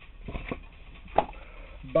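A few light knocks and handling sounds over a low steady hum, with one sharp click about a second in. These are the sounds of a painted board being handled and moved near the microphone.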